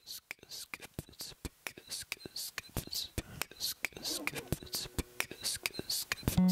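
Beatboxed percussion into a microphone: hissing hi-hat-like 'ts' sounds and short mouth clicks and kicks in a quick steady rhythm. It builds up denser and louder as the layers stack on a looper.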